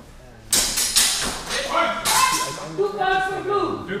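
Raised voices echoing in a large hall, opening with a sudden loud sharp sound about half a second in.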